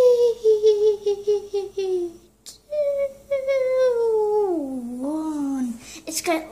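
A high-pitched voice humming two long, falling notes without words: the first wobbles in quick pulses, and the second slides down further near the end.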